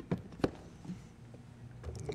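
A few light clicks and knocks from handling a countertop blender's plastic jar and lid before it is switched on, the two sharpest close together near the start and fainter ones later.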